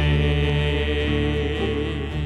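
Church worship band and singers holding one long final chord of a song, voices sustained over acoustic guitar and piano.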